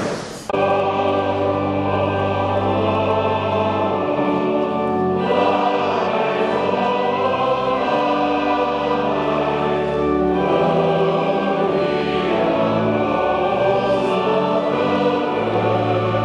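Church choir singing with organ accompaniment: sustained chords over held low bass notes, changing every second or two, starting about half a second in.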